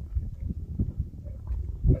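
Young male lion calling with a series of low, irregular grunts as it walks, ending in a stronger one.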